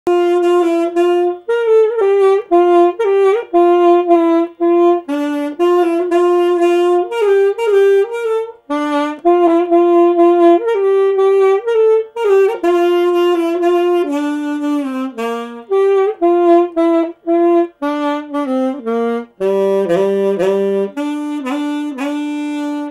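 Solo alto saxophone playing a melody in Indian classical style: short repeated notes with sliding ornaments between pitches, dropping to lower notes near the end.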